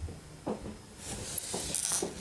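Handling noise from a phone being moved close to its microphone: about a second of scratchy rustling with a few sharp clicks, starting halfway through.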